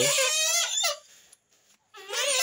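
Grey-headed swamphen giving one loud, high-pitched call that lasts just under a second and stops about a second in.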